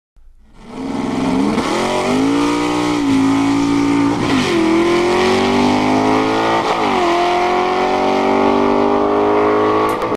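Race car engine accelerating hard through the gears: it fades in, then its pitch climbs steadily, dropping briefly at each gear change twice and climbing again.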